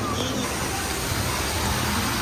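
Steady outdoor background noise, an even rushing hiss with faint distant voices in it.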